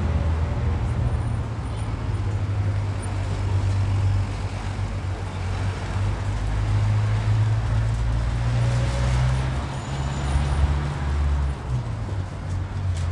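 City street traffic: a steady low rumble of car engines and tyres.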